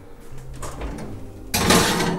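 Oven door being opened and a cast iron skillet put into the oven: quiet handling, then a loud scraping rush of noise about a second and a half in.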